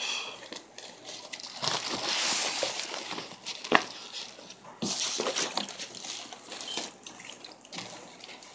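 Water-filled plastic fish bags being handled and lifted: plastic crinkling and water sloshing in uneven bursts, with a sharp click a little before the middle.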